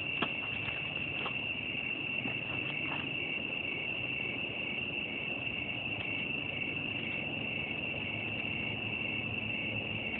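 Crickets chirping in a steady high trill, with a fainter, evenly pulsing chirp just below it. A few soft clicks sound in the first three seconds.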